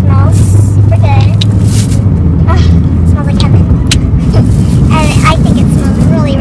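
Steady low rumble of a car heard from inside the cabin, easing a little about three seconds in, with short bits of quiet talk over it.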